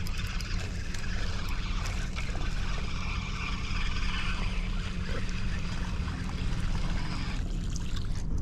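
Water trickling and splashing over a steady low hum; the water sound stops about seven and a half seconds in.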